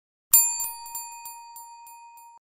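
A bell sound effect: a bright bell rings suddenly about a third of a second in, then is struck lightly again about three times a second while the ringing fades.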